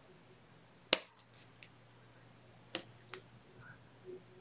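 Sharp clicks of jewelry pliers and copper wire being handled as the wire is bent: one loud click about a second in, then a few fainter ticks later on.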